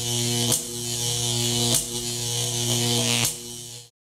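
A steady electric buzz, broken three times by a sharp click, then cutting off suddenly.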